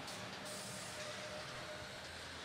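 Faint, steady background din of a gymnasium arena during a robotics match, with no distinct impacts. A thin steady tone sounds faintly for about a second in the middle.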